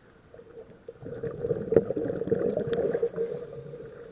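Diver's exhaled breath bubbling out of a scuba regulator, heard underwater: a crackling rush of bubbles that starts about a second in, lasts about two seconds, then fades.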